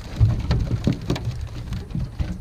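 A cast net full of live gizzard shad on a boat deck: the fish flopping and slapping against each other, the net and the deck in an irregular patter of wet slaps and thumps, the loudest about a quarter second in.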